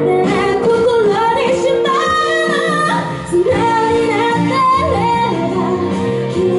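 A woman singing live into a microphone, her voice gliding between held notes, over an instrumental accompaniment of sustained chords.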